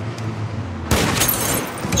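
Gunfire: a sudden loud shot cracks about a second in and its noise rings on for about a second, over the low hum of a car.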